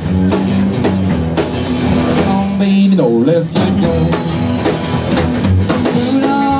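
Live rockabilly trio playing an instrumental passage: electric guitar over upright double bass and drums, with a bent note about three seconds in.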